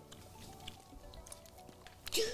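Quiet background music, with faint wet clicks from the mouth as boba pearls are chewed.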